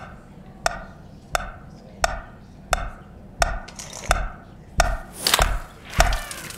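Wind-up mechanical metronome ticking steadily, a sharp wooden click about every two-thirds of a second (around 88 beats a minute). Near the end a few extra clicks and a brief swell of noise join the ticks.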